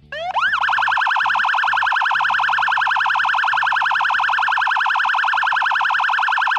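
Electronic siren that sweeps up in pitch, then warbles fast and steadily, over a low music line.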